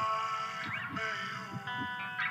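Music from a music video's soundtrack: a sustained synth chord held steady, with soft low pulses repeating beneath it.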